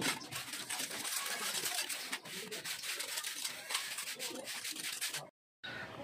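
Steel trowel scraping and smoothing wet cement mortar along the top of a brick wall, a rough, continuous rasp. The sound cuts out abruptly for a moment a little after five seconds in.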